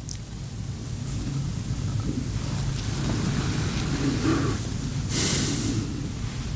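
A low rumble that grows steadily louder, with a short, loud hiss about five seconds in.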